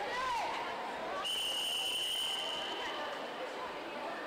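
A referee's whistle gives one long, steady blast about a second in, lasting nearly two seconds, over the chatter of a pool-deck crowd. For a backstroke heat, the long whistle calls the swimmers into the water and to the wall before the start.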